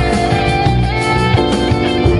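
Rock band playing live through a PA, an instrumental passage led by electric guitars, without singing.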